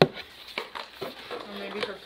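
A sharp knock right at the start, then light clicks and crinkling as a cardboard box and its packaging are handled, with a brief murmured voice near the end.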